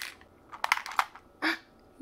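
Plastic clicks and clatter from a miniature toy drink vending machine worked by hand to dispense a toy drink: a quick cluster of sharp clicks about half a second to a second in, and one more knock near the end.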